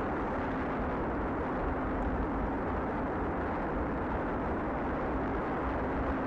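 Steady rumbling noise of wind buffeting the microphone, with no distinct events.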